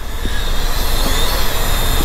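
A loud, steady rushing noise with a low rumble underneath and no clear pitch, holding even throughout.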